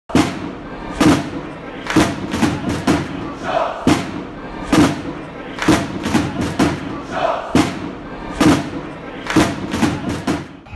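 Stadium-style intro music: a heavy thudding beat about once a second, with extra hits between, over crowd noise, and short shouted chant calls twice.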